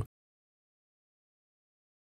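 Silence: no sound at all.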